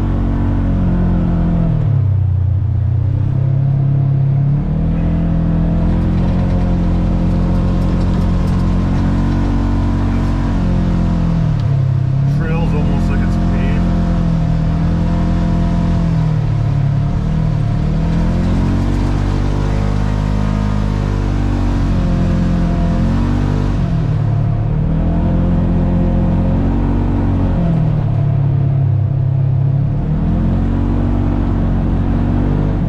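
Polaris General XP 1000 side-by-side's 999 cc parallel-twin engine running under way. Its pitch drops and climbs again several times as the throttle eases off and comes back on.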